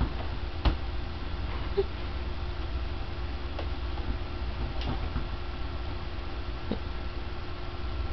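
Steady low hum of room noise, with a few sharp isolated clicks, the loudest a little under a second in.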